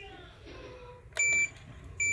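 Handheld inkjet batch-coding printer giving one short, high electronic beep about a second in, over faint background noise.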